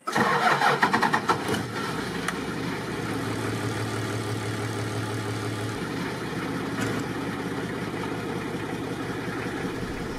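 Toyota Land Cruiser's diesel engine starting suddenly, rough for the first second or so, then settling into a steady idle.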